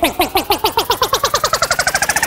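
An edited voice clip of the word 'mais' looped as a stutter effect, the repeats speeding up from about four to about ten a second, over a tone that rises steadily in pitch.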